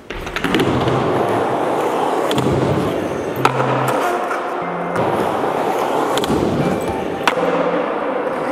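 Skateboard wheels rolling on a smooth concrete floor, with a sharp clack from the board about three and a half seconds in and again near the end.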